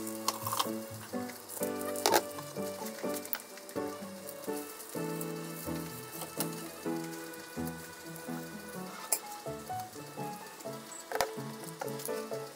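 Aburaage rolls stuffed with ground meat, with diced aburaage, sizzling steadily in oil in a frying pan. A few sharp clicks come as chopsticks turn them. Background music plays over it.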